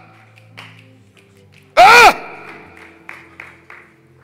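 A man's loud, drawn-out shout of "hah" through the sound system about two seconds in, its pitch rising then falling, over soft held organ chords. A few short, quieter cries follow near the end.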